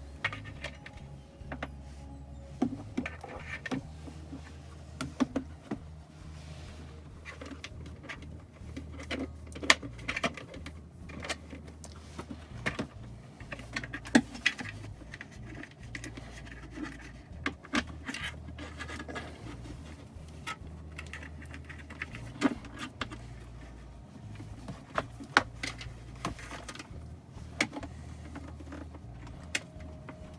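Scattered plastic clicks, taps and rattles of USB cables and a plastic charging pad being handled and fed through a car's centre-console panel, over a low steady background rumble.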